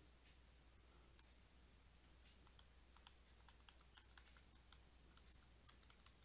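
Faint, quick clicks of a stylus tapping on a tablet screen during handwriting, starting about two seconds in and coming several times a second. Under them is a faint, steady low hum.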